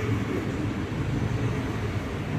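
Steady low background rumble and hum with no distinct events.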